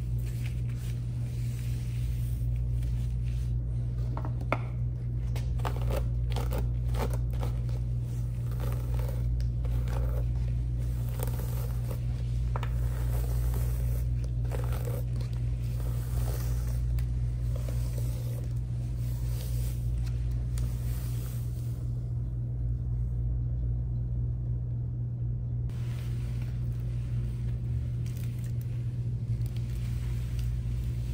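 Shampoo lather being scrubbed through wet coily hair and scalp with gloved fingers and a scalp brush: short, scratchy, crackling scrubbing strokes over a steady low hum. The scrubbing is densest in the first two-thirds and thins out for a few seconds near the end.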